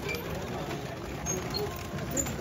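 Several people's voices talking over one another around a passing festival procession, over steady street noise, with a few short high chirps.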